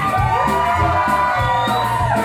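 Live rock'n'roll band playing: electric bass, electric guitar, saxophone and drums, with a rising note glide early on.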